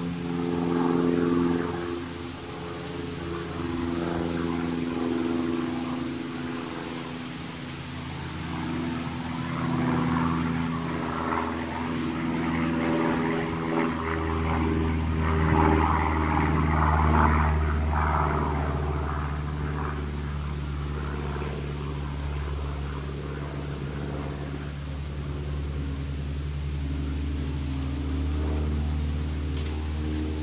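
A motor running with a steady low hum that changes pitch and grows louder about halfway through, then eases off toward the end.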